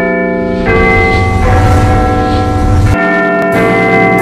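Loud intro theme music of bell-like chimes over held chords and a heavy bass, the chords changing every second or so.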